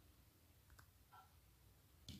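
Near silence: faint room tone with a couple of faint clicks a little under a second in.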